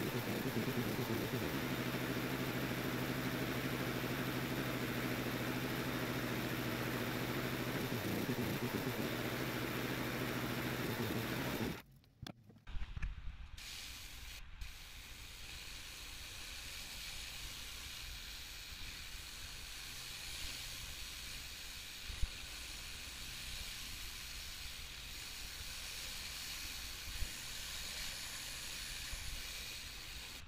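Pressure washer engine running steadily under a hiss of water spray. About twelve seconds in the sound cuts to a quieter, steady spray hiss from a rotary surface cleaner moving over wet concrete, with a few light knocks.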